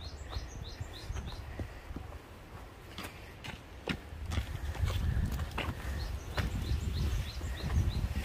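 Footsteps on a hiking trail: irregular clicks and knocks, with a low rumble that gets louder about halfway through. A bird calls quick runs of short, high, falling notes near the start and again in the last couple of seconds.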